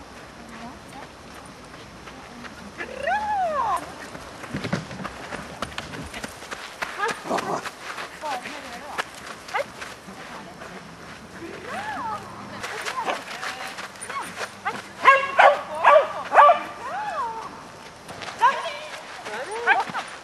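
Dog barking at intervals, with a quick run of four or five loud barks about three-quarters of the way through, amid people's voices.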